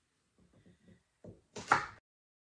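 Kitchen knife cutting rhubarb stalks on a wooden cutting board: a few soft knocks, then one louder, crisp cut near the end.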